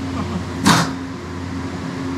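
Steady low machine hum of the store's cooling or ventilation, with one short sharp noise less than a second in.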